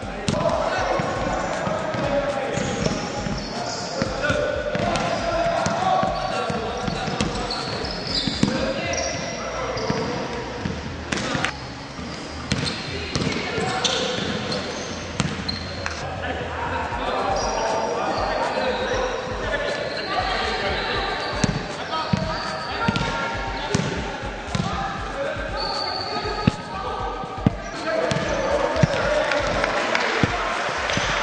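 Basketballs bouncing on a gym floor during dribbling drills, a run of irregular thuds, with players' and coaches' voices going on throughout.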